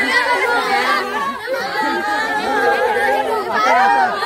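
Several people's voices talking over one another in overlapping chatter.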